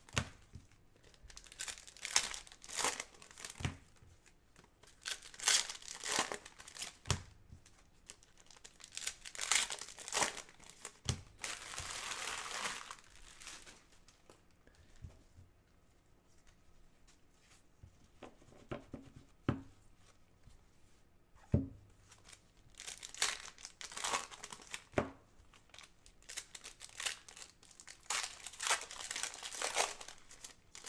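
Foil trading-card pack wrappers crinkling and being torn open by gloved hands, in repeated crackly bursts. A quieter stretch in the middle holds only a few sharp taps before the crinkling starts again.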